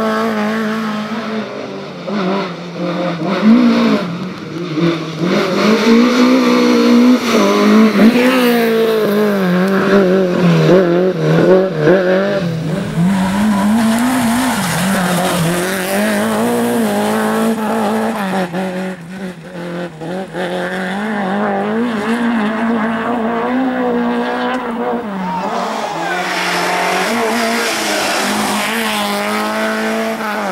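Peugeot 205 rally car engine revving hard through corners, its pitch repeatedly climbing and dropping with throttle and gear changes. The engine note dips briefly about two-thirds of the way through, then picks up again.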